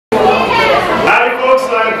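Speech: a man talking into a handheld microphone.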